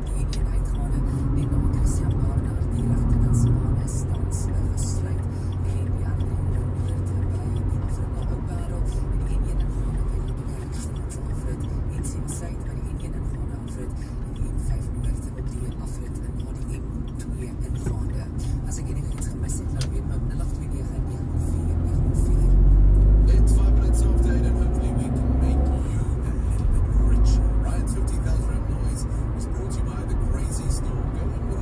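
Engine and tyre noise inside a moving car's cabin, swelling for a few seconds about two-thirds of the way through, with a car radio playing faintly underneath.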